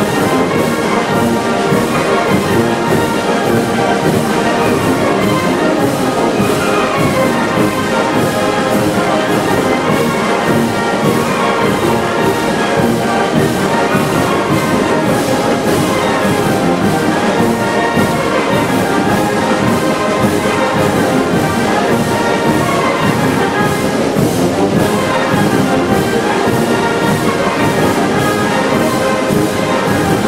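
A wind band of flutes, clarinets, saxophones and brass with sousaphones plays a Mixe son y jarabe, a traditional Oaxacan dance piece, with a steady, even beat.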